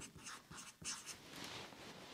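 Marker pen writing a word on a board chart: a faint run of short, scratchy strokes.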